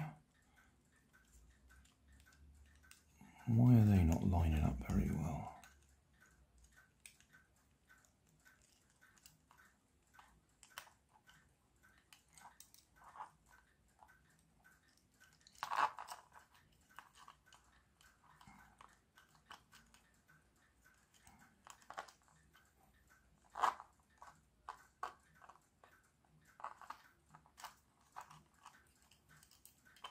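Small scattered clicks and crackles of 3D-printed plastic gears and wheels being turned and pushed together by hand, with a few sharper clicks midway and later; the gear teeth are not meshing cleanly. A brief murmured voice sounds about four seconds in.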